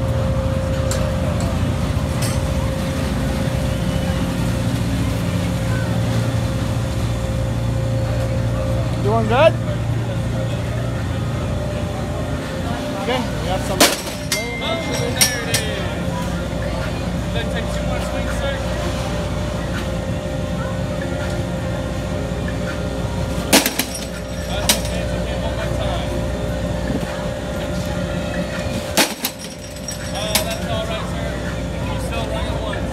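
Outdoor carnival ambience: a steady hum of ride machinery under background crowd voices. A rising whistle-like glide comes about nine seconds in, and three sharp knocks follow later, from a mallet striking a high-striker strength game.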